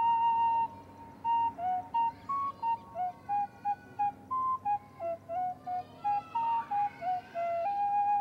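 Solo flute playing a slow melody: a long note, a short pause, then a string of short separate notes, and a long held note near the end.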